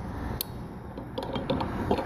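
A few scattered light clicks and taps as hands work hoses and a threaded sensor fitting in an engine bay, over a steady low background rumble.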